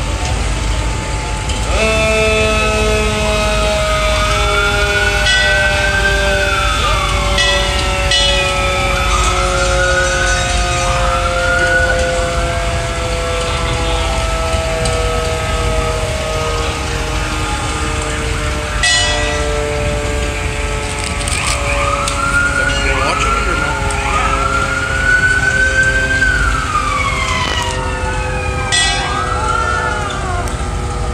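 Fire truck sirens sounding in a passing line of fire trucks: repeated wails that rise and fall over a second or two each, over long steady tones that slowly sink in pitch. A few short blasts cut in, about eight seconds in, near twenty seconds and near the end, over a constant engine rumble.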